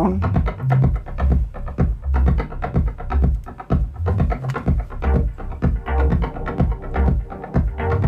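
Deep house track playing back from Ableton Live: a steady, evenly repeating kick drum with bass underneath and light percussion ticking on top.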